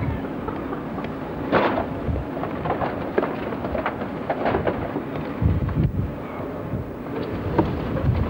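Irregular knocks, clunks and a few heavier thumps as wooden boards and boxes are dumped into a hatchback's boot.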